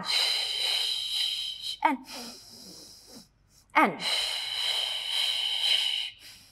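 A woman's long, loud, hissing breaths, each about two seconds, with a fainter one between them. The breaths are taken in rhythm with Pilates kicks and broken by short spoken 'and' cues.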